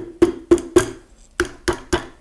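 Rubber mallet lightly tapping a steel barrel band on a Marlin 336W lever-action rifle to coax the tight-fitting band back into place. About seven quick taps in two runs with a short pause a little after a second in, each tap followed by a short ringing note.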